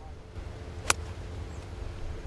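A golf club striking the ball on a full swing: a single sharp click about a second in, over steady low outdoor background noise.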